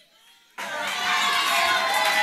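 Audience cheering and shouting, many voices at once, starting suddenly about half a second in after near quiet.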